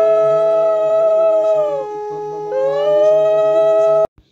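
Conch shell (shankh) blowing in long sustained notes, the traditional call at a Lakshmi puja. One note holds steady while a second one sags and breaks off about two seconds in, then swells back.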